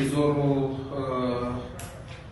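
A man's voice speaking slowly in drawn-out, held syllables, dropping to quiet room noise for the last moment.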